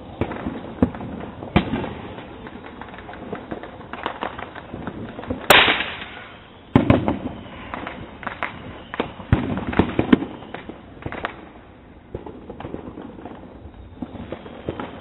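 Consumer fireworks going off, a string of sharp bangs at irregular intervals, the loudest about five and a half seconds in.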